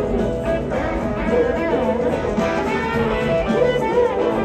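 Rock band playing live, with a lead electric guitar soloing in bending notes over the band.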